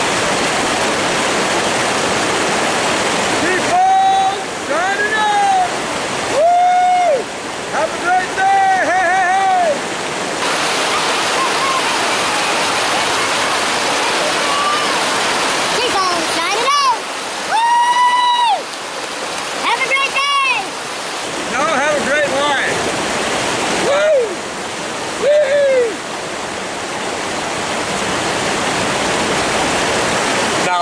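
River water rushing steadily over a small rocky cascade close to the microphone. A man's voice rises over it in long, drawn-out calls several times, in groups about four, sixteen and twenty-four seconds in.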